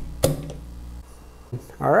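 Metal spatula prying a resin 3D print off a metal build plate, with a sharp click about a quarter second in as the print breaks loose.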